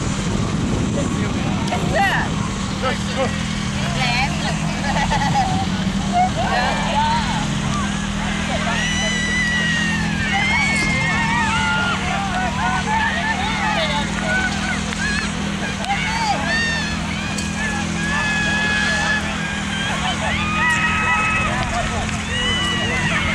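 Children and adults calling and shouting across an open playing field, with voices overlapping at a distance, over a steady low hum.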